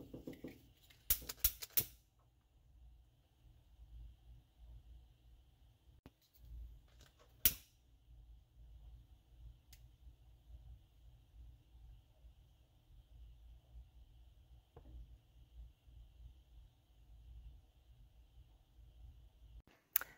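Quiet room tone with a faint steady hum, broken by small clicks and handling noises from hands working loose wires behind a truck dashboard. There is a cluster of light clicks in the first couple of seconds and one sharper click about seven seconds in.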